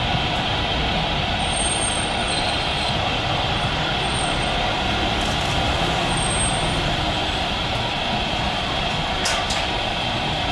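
Boeing 777 jet engines running as the airliner rolls along the runway, a loud, steady rush of noise.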